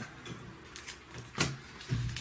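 Bagged-and-boarded comic books in plastic sleeves being handled, with a light rustle and one sharp knock about a second and a half in.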